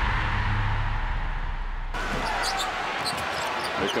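The deep, fading tail of a TV sports intro sting, a low boom and whoosh. About two seconds in it cuts to arena sound: crowd noise with a basketball being dribbled on the hardwood court.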